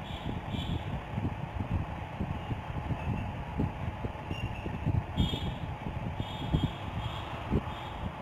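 Steady low background noise from an open microphone, with faint, irregular low knocks scattered through it.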